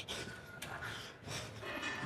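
A lifter's forceful breaths, several sharp exhales through the nose and mouth, taken with the effort of cable triceps pushdown reps.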